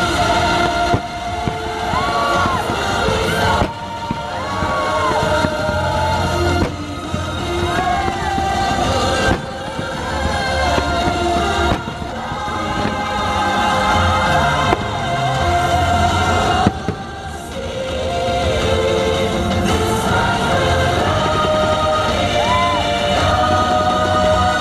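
A fireworks show's soundtrack, orchestral music with a choir singing, plays loudly over the show's speakers, mixed with the bangs and crackle of fireworks bursting.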